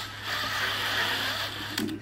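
Electric drill driving a paddle mixer, running steadily as it stirs a cement mix in a plastic bucket; the motor cuts out shortly before the end.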